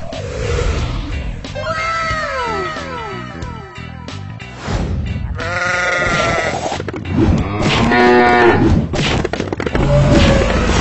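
Cartoon soundtrack: background music with a run of comic rising-and-falling whistle-like glides, then two animal calls, a short one about five and a half seconds in and a longer, louder one near the eighth second.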